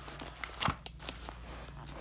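Pages of a paper instruction booklet being flipped rapidly by hand, a quick series of short rustles and snaps of paper.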